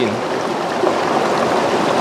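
River water rushing steadily.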